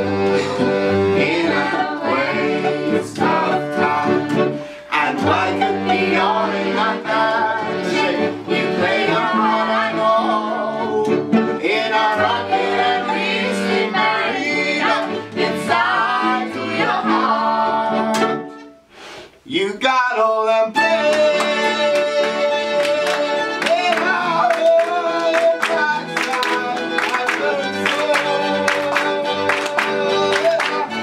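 Live acoustic folk band: accordion, fiddle and cello playing together under several voices singing. About two-thirds of the way through, the music briefly drops out with a sliding note, then comes back in.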